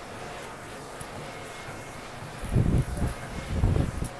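Treadmill running with a steady low hum, with two heavy low rumbles about a second apart near the end.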